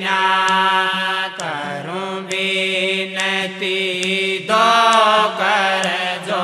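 Devotional aarti singing: a long-held vocal line that bends and glides between notes over a steady low drone.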